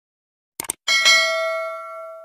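Subscribe-button sound effect: a quick double mouse click just over half a second in, then a single bell ding that rings on and slowly fades.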